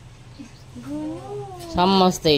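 A toddler's drawn-out vocal sound: one call about a second long that rises and then falls in pitch. Near the end a woman starts speaking loudly.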